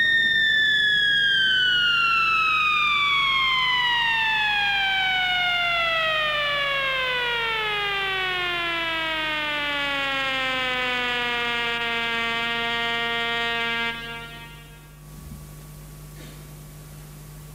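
A Trautonium tone sliding slowly and steadily down in pitch over about three octaves, played by pressing the wire onto the metal rail of its string manual and drawing the finger along it. The tone stops suddenly about 14 seconds in.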